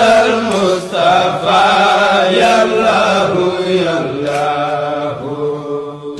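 A woman's solo voice chanting an Arabic devotional song in long, held, wavering melodic phrases.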